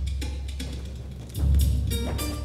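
Instrumental music with drums and percussion, no singing; a heavy low drum beat comes in about one and a half seconds in.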